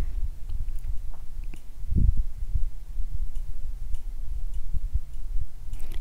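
Paint brush working on a stretched canvas: a low rumble and soft knocks from the canvas, with a few light ticks and one soft thump about two seconds in.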